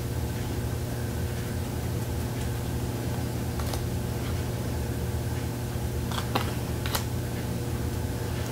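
Steady rushing hum of a central air conditioner running. A few soft clicks of stiff tarot cards being slid in the hand come near the end.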